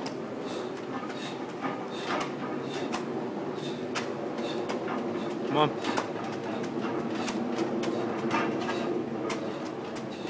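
Irregular metallic clinking and rattling from a 240 kg loaded strongwoman yoke, its weight plates and steel frame shifting with each short step of a heavy yoke walk.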